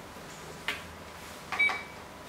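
A Go stone clacks down onto the wooden board, then about a second later comes a sharper click with a short high beep from the digital game clock being pressed.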